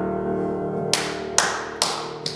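A grand piano chord rings and slowly dies away, then three sharp hand claps about half a second apart beat out the tempo for the singers.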